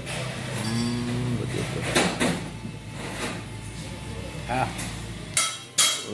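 Handling noise: a few sharp clicks and knocks as a sealant tube is handled over a plastic valve cover, over a steady low hum that stops suddenly near the end. A man's brief voice is heard about a second in and again near the end.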